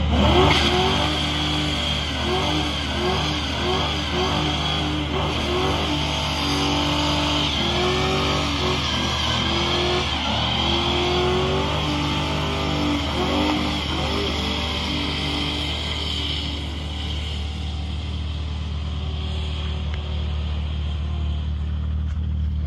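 A car doing a burnout: the engine revs up and down over and over while the rear tires spin and squeal. After about sixteen seconds the squeal dies away and the engine settles to a steadier note.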